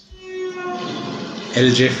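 Opening of a film trailer's soundtrack: a held tone with overtones that fades into a rising wash of sound, with a louder burst about one and a half seconds in.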